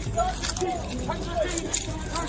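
Several raised voices calling over one another, with metallic jangling and a few sharp clicks.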